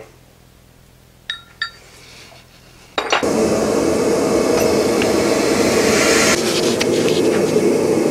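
Two light ringing metallic clinks of steel bars touching, then about three seconds in a power hammer starts up and runs with a steady mechanical noise.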